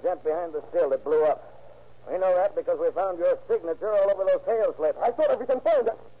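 Men's voices speaking in short, broken phrases over a faint steady low hum from the old recording.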